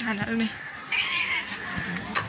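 Calico cat giving a drawn-out, low meow that ends about half a second in, followed by a brief rush of noise about a second in.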